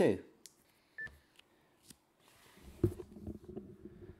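A short electronic beep from an ICOM ID-52 handheld transceiver about a second in, as its transmission ends. A brief hiss follows, then faint muffled sounds with a few clicks near the end.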